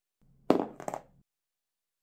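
A small die tossed onto cardboard boxes: a sharp knock about half a second in, then a second, smaller knock as it comes to rest.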